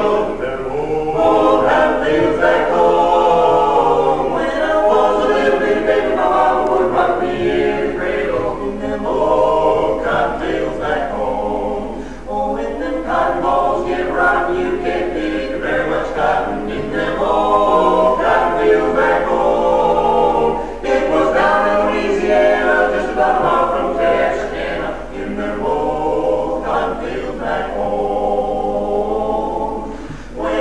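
Barbershop quartet of four men (tenor, lead, baritone, bass) singing unaccompanied in close four-part harmony, held chords with short breaks between phrases.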